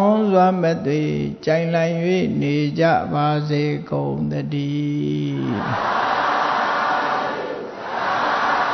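Theravada Buddhist monks chanting in unison, a slow chant of several drawn-out phrases that breaks off about five and a half seconds in. A steady hiss-like noise follows.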